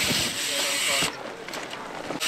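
Bicycle tyres running over loose dirt, heard as a loud hiss that stops abruptly about a second in.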